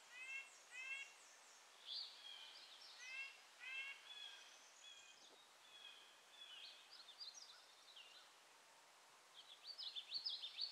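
Faint woodland birdsong: several birds giving short, repeated calls and quick runs of high notes, over a quiet background hiss.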